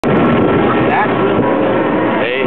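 Roller coaster lift mechanism running as the train is hauled up the lift track: a loud, steady mechanical noise with a few held tones, and voices faintly underneath.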